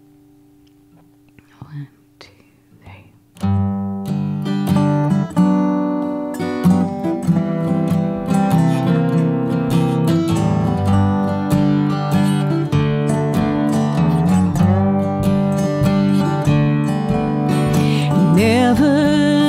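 After about three seconds of quiet, an acoustic guitar and a lap-style resonator guitar start an instrumental intro. They play steadily to the end, with sliding notes from the resonator over the guitar's chords.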